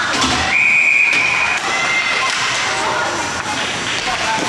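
Spectators in an ice rink shouting, with a thud near the start. About half a second in comes a single steady blast of a referee's whistle, lasting about a second.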